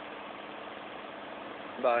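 Steady hum of idling vehicle engines, with a short spoken word near the end.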